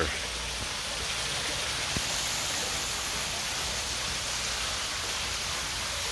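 Steady rush and splash of a garden waterfall feature pouring into a koi pond.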